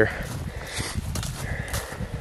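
Footsteps of a hiker on a leaf-covered dirt trail, an irregular run of soft thuds and crunches, with the rustle of a loaded backpack and clothing.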